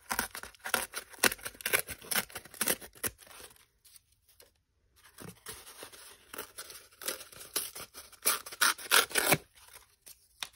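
Corrugated cardboard being torn by hand: runs of short rips in two bouts, with a pause of about a second and a half between them, the loudest near the end.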